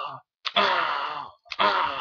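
A person making breathy, wordless vocal sound effects, three in quick succession about a second apart, each starting with a sharp click and fading away, as they act out a fight with toy wrestling figures.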